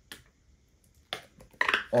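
Two light plastic clicks about a second apart as a squeeze bottle of gold acrylic paint is handled over a paint cup.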